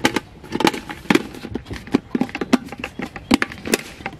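Plastic lid being pressed down and snapped onto the tub of a CREAMOON collapsible portable washing machine: a run of irregular plastic clicks and knocks as its tabs lock in.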